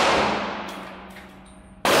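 A Ruger-57 pistol in 5.7×28mm fired once near the end. Before that, the echo of a shot fired just earlier dies away over about a second and a half. Each shot rings out with the long echo of an indoor range.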